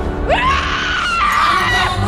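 A young woman screams in pain or terror: one strained cry that rises sharply at the start, holds high for about a second and a half, and stops just before the end. Background music runs underneath.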